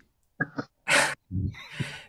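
Men laughing and chuckling in several short, breathy bursts.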